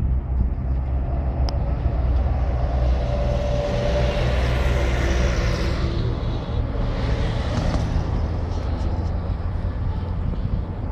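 Road traffic going by: a steady low rumble, with one vehicle swelling past and fading about midway.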